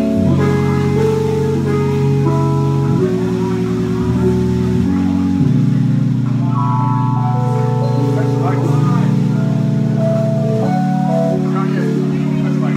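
Live keyboard trio music: an organ-voiced keyboard holds sustained chords that change every one to three seconds over deep bass notes, with little drumming heard.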